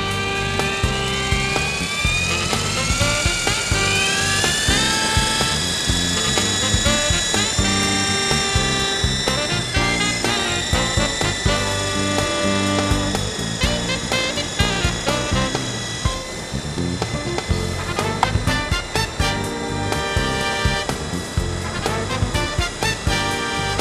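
Background music with a steady beat, over the high whine of the Vertical MD 520 coaxial RC helicopter's electric motors. The whine rises in pitch over the first few seconds as the rotors spin up, then holds steady while it flies.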